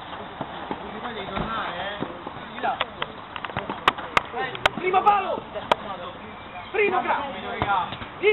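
Football being kicked on an artificial-turf pitch, a few sharp knocks between about four and six seconds in, over indistinct shouts and calls from the players.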